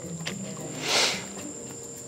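Steady high-pitched drone of insects such as crickets, with a brief soft rush of hiss about a second in.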